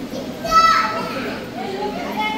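Chatter of adults and children, with a child's loud, high-pitched cry about half a second in that falls quickly in pitch.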